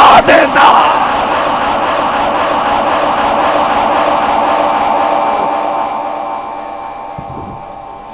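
A man's loud shouted word into a microphone, followed by a crowd of listeners calling out together. The crowd sound holds steady for several seconds, then slowly dies away.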